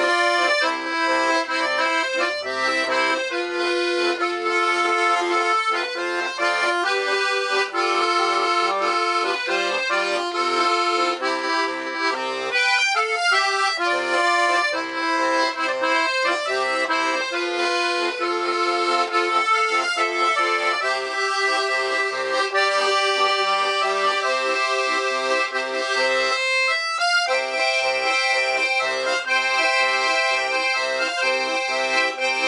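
Francini 12-bass student piano accordion played solo: a melody on the treble keys, whose two middle reeds are tuned musette, over a rhythmic bass-and-chord accompaniment on the buttons. The playing breaks off briefly twice, about 13 and 27 seconds in.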